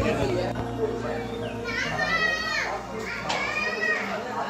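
Children's voices calling out: two long, high-pitched wavering calls in the second half, over steady background music.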